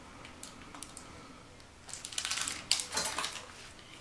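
Light handling noises from cake-decorating tools on a countertop: a few faint ticks, then about two seconds in a quick cluster of small clicks, rustles and light clatter lasting about a second.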